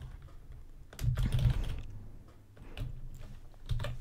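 Computer keyboard typing: a few short runs of keystrokes.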